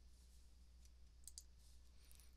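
Near silence: room tone with a steady low hum, and a couple of faint clicks about a second and a half in.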